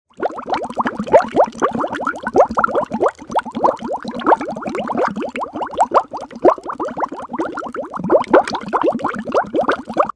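Bubbling water sound effect: a continuous stream of bubbles with many quick rising blips, cutting off suddenly at the end.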